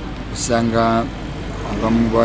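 A man speaking a short phrase in an interview, over a steady low background hum.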